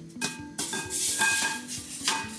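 Hot metal steam coil, just heated by gas burners to make superheated steam, being dipped into a glass bowl of water to cool it: a loud hiss and sizzle that starts a moment in and fades near the end.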